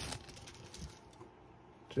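Thin clear plastic bag crinkling as a phone mount is slid out of it. The crinkle fades after about half a second, leaving faint rustling and small handling ticks.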